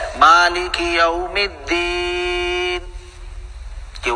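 A man's voice reciting a Quranic verse in a chanting style. About two seconds in he holds one long, steady note, which then fades.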